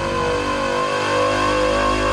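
Animated motorcycle's engine running steadily, mixed with soundtrack music.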